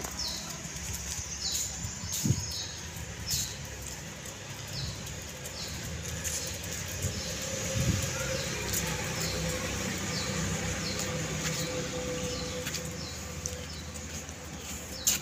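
Small birds chirping in the background: short, high, falling chirps about once a second, over a steady low hum. Two brief low knocks come about two seconds in and again near eight seconds.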